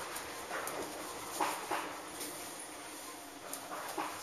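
Inside the cab of an electric commuter train pulling slowly out of a station: steady running noise broken by a few short, sharp sounds, the loudest about a second and a half in.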